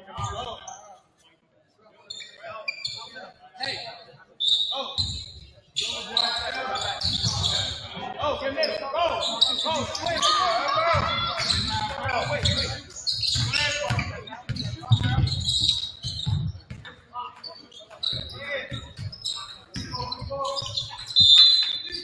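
Basketball bouncing on a hardwood gym floor amid shouting players and coaches, echoing in the gym. A short shrill whistle sounds just before the end.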